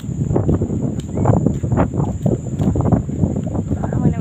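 Irregular rumbling and crackling noise on a phone microphone that is being handled and jostled while the person holding it walks, heaviest in the low end.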